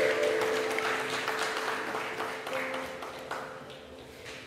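Congregation applauding, the clapping fading toward the end, over a sustained chord held on a keyboard instrument.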